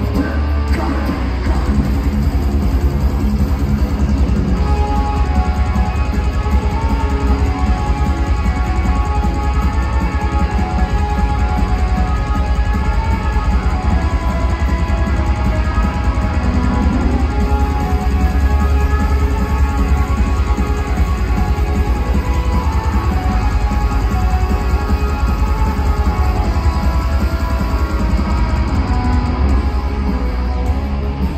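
Thrash metal band playing live through a large PA, heard from within the crowd: loud, unbroken guitars, bass and drums in an instrumental passage.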